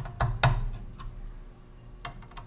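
A few light clicks and taps of hardware being handled against the computer's sheet-metal chassis and card-guide rails, about four in the first second, the one about half a second in the loudest.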